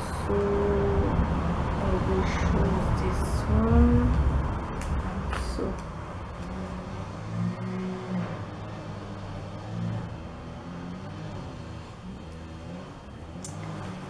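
A motor vehicle's low rumble swells and fades away over the first five or six seconds. Soft wordless humming and a few light clicks follow.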